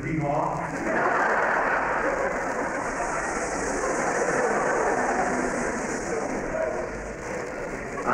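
Concert hall audience laughing and applauding after a joke, a dense steady clapping that starts about a second in and runs about seven seconds.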